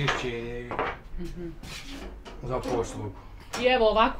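Low talking voices, with a long-handled oven peel scraping and knocking at the mouth of a wood-fired bread oven as baked flatbreads are pulled out.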